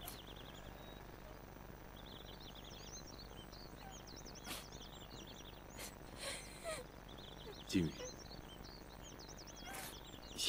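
Birds chirping in repeated short, quick trills over a steady background hiss. A brief falling vocal sound about eight seconds in is the loudest moment.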